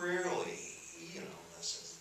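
A man talking into a handheld microphone, his speech carried over the theatre's sound system.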